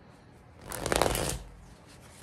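A deck of tarot cards being shuffled by hand: one quick burst of rapid card flicks lasting under a second, around the middle.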